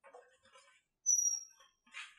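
A short, high-pitched squeak about a second in, one steady note falling slightly in pitch. Faint footsteps and rustling come before it as a person walks in.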